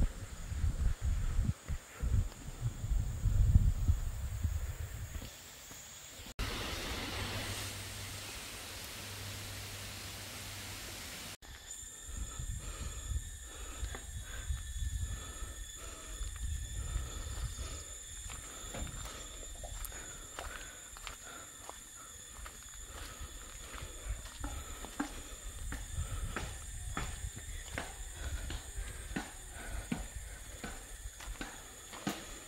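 Outdoor trail sound of someone walking: low rumbling bumps of wind and handling on the microphone at first. Then a few seconds of steady rushing hiss. Then many small footstep clicks and knocks over a steady high-pitched drone. The sound changes abruptly twice where clips are joined.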